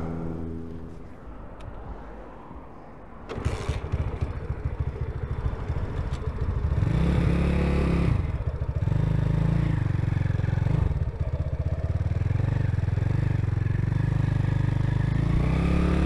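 Honda C90 step-through motorcycle's small single-cylinder engine, heard from the rider's seat. It ticks over low at first, then about three seconds in it opens up and pulls away. The revs climb and drop back twice as it goes up through the gears, over wind and road noise.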